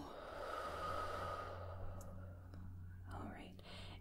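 A person's long, slow exhale after a deep breath, an airy out-breath of about two seconds that fades away, followed by a fainter breath about three seconds in.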